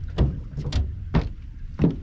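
Four footsteps thudding on a boat's deck, about half a second apart, as a man walks its length.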